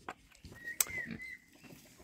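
Faint poultry-yard sounds: a thin, high call from a bird, held for under a second, with a sharp click partway through.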